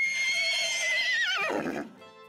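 A horse whinnying: one long high call that quavers and drops in pitch about a second and a half in.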